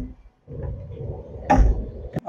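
Deep bass rumble from a store's display speakers and subwoofer playing a demo, with a heavier low thump about one and a half seconds in.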